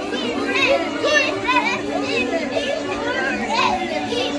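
A group of children shouting and cheering together, many high voices overlapping, with a song playing in the background.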